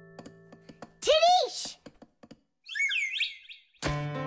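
Cartoon sound effects of a tiny character dropping through a piggy bank's coin slot: a few soft clicks, a loud warbling glide that wavers up and down, then a shorter falling chirp. Near the end a sharp thump marks the landing on the coins inside, and a held musical chord comes in.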